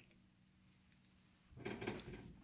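Near silence, then about one and a half seconds in a short, quiet metallic shuffle and click from a Bridgeport milling head's quill feed trip mechanism being pushed by hand so that the feed trip drops out, disengaging the quill feed.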